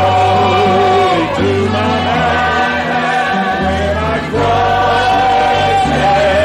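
Gospel singing with accompaniment, the voices holding long notes with vibrato over steady low held notes, with short breaks between phrases a little after a second in and again about four seconds in.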